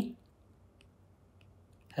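A few faint, light clicks of a stylus tapping on a tablet screen while handwriting, after a spoken word trails off at the start.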